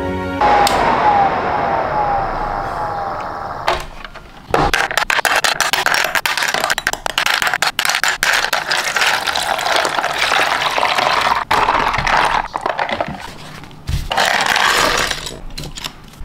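Purple plastic model-kit parts being washed by hand in a plastic tub of water: water sloshing and splashing, with many small clicks of parts knocking together. It dips briefly about four seconds in and eases near the end.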